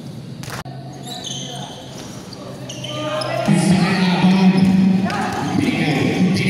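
Basketball bouncing on a hardwood gym court and sneakers squeaking during play, with voices echoing in the hall. A steady low tone gets louder about halfway through.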